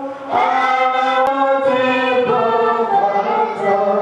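Hymn singing through a microphone and loudspeakers, in long held notes that change pitch every second or so. There is a single faint click about a second in.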